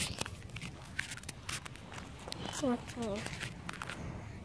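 Light footsteps and handling noise from a hand-held phone being carried and swung about, a string of small clicks and scuffs. A faint voice murmurs briefly just before three seconds in.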